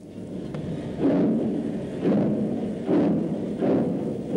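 Exhaust beats of Southern Railway King Arthur-class 4-6-0 steam locomotive No. 784 pulling away: four heavy chuffs, coming closer together as it gathers speed.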